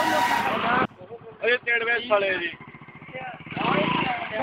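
A music track cuts off abruptly under a second in, giving way to the live sound of a motorcycle engine running with an even low pulsing, under men's voices calling out.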